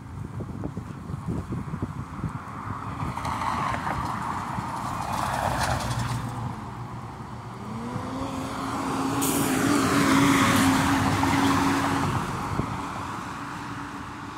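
Road traffic on a city street: one car passes about five seconds in, then a louder vehicle with a steady engine hum passes, loudest about ten seconds in.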